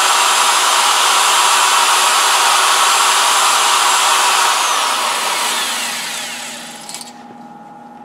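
Corded electric drill spinning a spring-loaded cylinder hone at high RPM inside an engine block's cylinder bore, a steady whine with the grinding rush of the abrasive on the cylinder wall. About four and a half seconds in, the trigger is released and the drill's whine winds down, fading out by about seven seconds.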